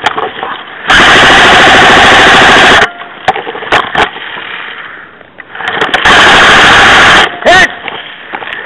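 Airsoft rifle firing two long full-auto bursts, the first about two seconds, the second about a second and a half, loud enough to clip, with a few single clicks between them.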